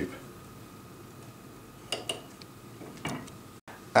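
A few faint, short clicks and ticks of a scalpel blade cutting through the end of a tube against a wooden block, about two and three seconds in, over low room hiss.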